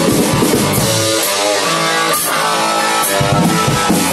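Live rock band playing loud: distorted electric guitars over bass and a drum kit, with drum hits landing through the sustained chords.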